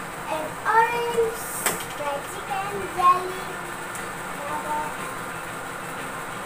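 Young children's high-pitched voices calling out or sing-songing in short bursts over the first three seconds, with a single sharp click about a second and a half in. A quieter steady room background follows.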